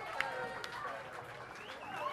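Indistinct chatter of several voices in a club, with no music playing, and a sharp click shortly after the start.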